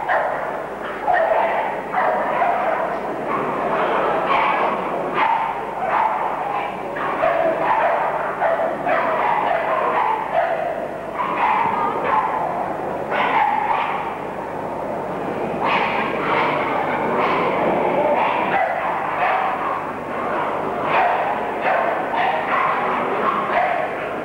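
Staffordshire Bull Terriers barking over and over, several at once, so the barks overlap without a break.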